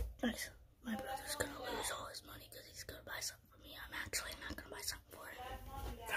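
A child whispering, with some quiet speech.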